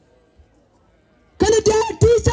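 Near silence, then about one and a half seconds in a woman's voice comes in loud through a microphone, high-pitched and holding its notes in a sung or chanted way.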